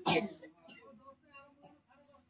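A person clearing their throat once, short and sharp, right at the start, followed by faint voices.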